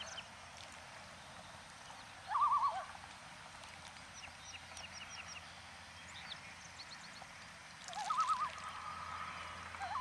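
Birds calling: a quavering, wavering call twice, about two seconds in and again near the end, with scattered short high chirps in between.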